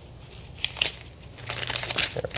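Paper crinkling and rustling as a dollar bill is pulled out and handled: a few short crinkles a little after half a second in, then more near the end.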